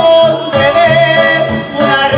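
A man singing live into a handheld microphone, holding two long notes with a slight waver, over instrumental backing music.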